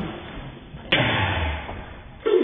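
Thrown rubber ball striking: a single sudden thump about a second in that dies away over most of a second.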